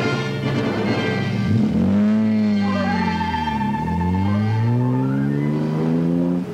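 Dramatic orchestral underscore: loud sustained notes that slide slowly up and down in pitch, with a higher note held through the middle.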